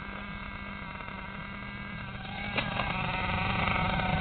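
Nitro engine of an RC monster truck idling steadily with an even buzzing tone, getting louder from about two seconds in.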